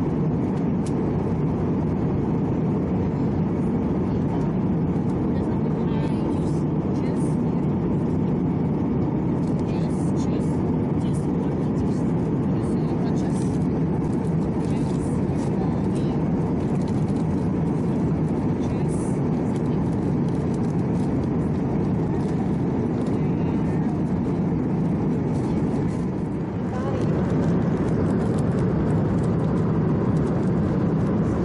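Steady airliner cabin noise in flight, the even roar of air and engines, with people talking over it and scattered small clicks and clinks of cups and trays during the meal service.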